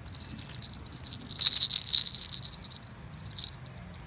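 Plastic baby rattle being shaken, a high jingling that is loudest about a second and a half to two seconds in, with one last short shake near the end.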